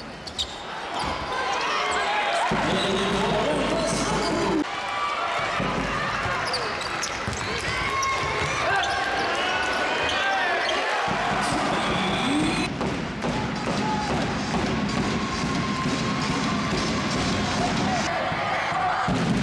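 Live basketball game sound in an arena: the ball bouncing on the court amid a steady mix of voices and shouts from players and crowd, echoing in the large hall.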